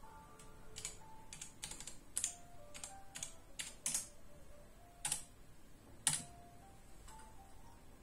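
Computer keyboard being typed on: a dozen or so irregular key clicks over about five seconds, the loudest strokes spread through the middle. Under it runs a faint, simple melody of single electronic notes stepping from pitch to pitch, telephone hold music.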